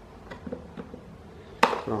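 Small flat-blade screwdriver prying at a plastic retaining latch on an Arno Silence Force fan's housing: a few faint ticks, then one sharp plastic snap about a second and a half in as the latch pops free.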